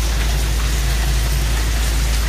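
Steady rain falling, an even hiss with no breaks, over a constant low rumble.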